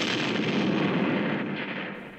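Explosion sound effect for a torpedo striking a ship: a loud blast that hits just before and then fades away over about two seconds.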